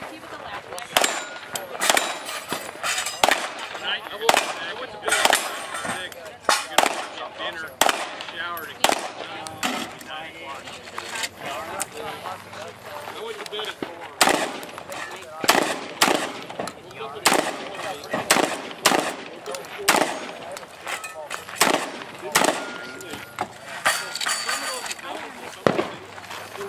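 Gunfire from a competitor shooting a practical 3-gun stage: sharp shots fired in quick strings and pairs, spread through the whole run, with short pauses between strings.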